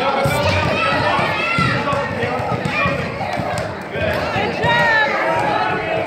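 Spectators and players talking and calling out over one another in an echoing gym, with the thuds of a basketball being dribbled on the floor.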